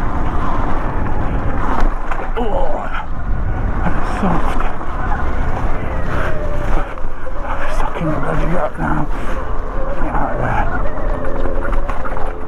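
Riding noise from a Sur-Ron Light Bee X electric dirt bike on a leafy, muddy trail: steady wind rumble on the microphone with tyres rolling over leaves and mud, and a faint steady whine coming in during the second half.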